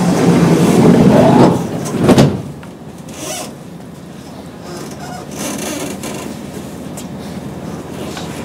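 Cabin sound of a Kintetsu 8800 series electric commuter train as it departs a station: loud noise for the first two seconds or so, then a quieter steady sound.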